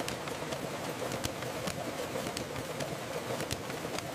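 Sheet-fed banknote printing press running: a steady machine noise with irregular light clicks and clacks as sheets are delivered onto the stack.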